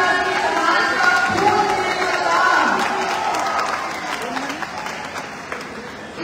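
Crowd voices calling out, with some applause.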